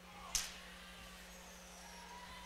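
Faint arena background under a steady low hum, with one short sharp knock about a third of a second in.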